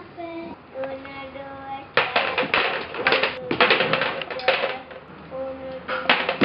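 A young girl's voice holding pitched, wordless sounds. From about two seconds in it is joined by loud, rapid clattering and rattling, which becomes the loudest sound.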